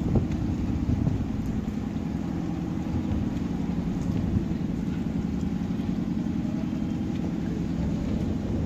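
Steady rain falling on a flooded paved surface, heard as an even, low-pitched rush.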